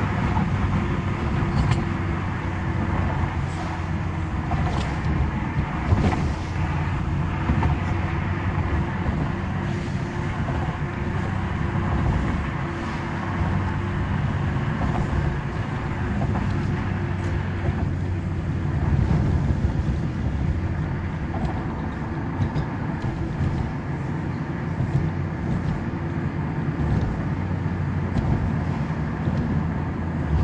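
Steady engine hum and tyre rumble heard from inside a moving car, picked up by a dashcam, with a brief knock about six seconds in.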